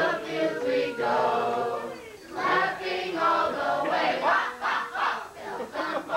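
A group of people singing together, several voices overlapping on held, wavering notes, with a short break about two seconds in.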